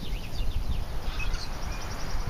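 Wind rumbling on the microphone, with small birds chirping in the background in short, quick calls and a rapid repeated trill in the second half.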